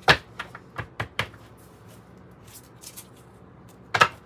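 A deck of oracle cards being shuffled by hand: a series of sharp card clicks and taps, the strongest four in the first second and a half, then lighter ones toward the end.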